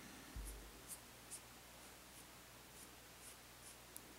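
Near silence with faint, short swishes of a paintbrush stroking dye onto stretched silk, about seven over four seconds. A dull low thump comes about half a second in.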